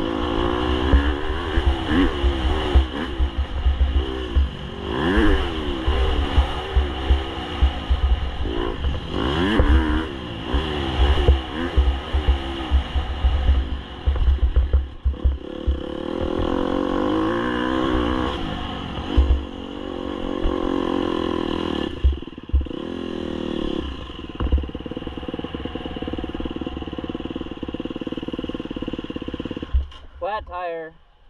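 Dirt bike engine ridden hard on a trail, revving up and down again and again through the gears, with low thumps and rumble from the bumps. Near the end the engine holds a steadier pitch, then falls away as the bike rolls to a stop.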